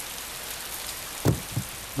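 A steady, even hiss like rain, with a short low thump a little past a second in and a weaker one just after.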